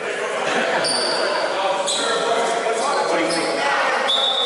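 Basketball being dribbled on a gym floor, with short sneaker squeaks around one second in and again after three seconds. Voices of players and onlookers echo through the hall.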